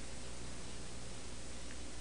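Steady hiss with a low electrical hum, the background noise of the microphone and sound system in a pause between spoken phrases.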